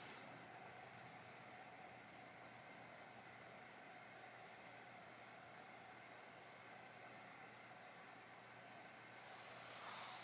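Near silence: faint steady room tone with a low hiss.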